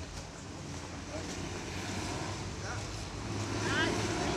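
Faint voices over a steady low hum; near the end a voice starts speaking loudly.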